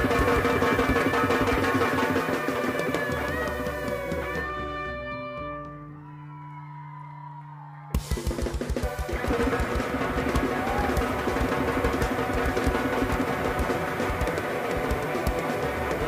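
Live rock band playing with drum kit and guitar. About four seconds in the music thins to a single held low note for a few seconds, then a sharp hit brings the full band back in with a busy drum beat.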